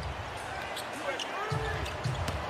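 Basketball dribbled on a hardwood court, with a few bounce thuds and short sneaker squeaks on the floor.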